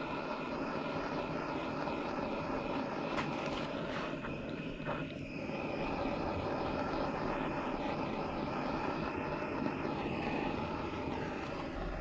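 Handheld gas torch burning with a steady hiss of the flame as it heats heat-shrink tubing on a pipe fitting.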